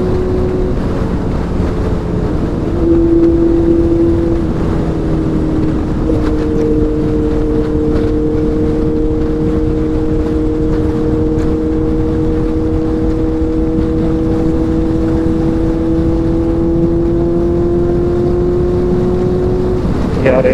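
Honda CBR650F's inline-four engine running at a high steady cruise, with wind noise on the microphone. About three seconds in the engine gets louder for a moment. After that its note climbs slowly as the bike gathers speed.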